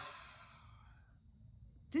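A woman's breathy sigh, exhaled and trailing off over the first second, followed by quiet room tone.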